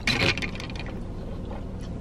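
Short crackling and rustling handling noise, as of plastic being moved close to the microphone, in the first half-second. After that there is only a low, steady background hum.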